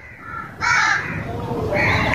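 A crow cawing twice, harsh and rasping, the calls about a second apart.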